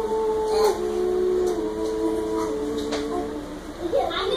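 Two young voices singing a cappella, a girl and a boy, in slow, long held notes that step downward in pitch.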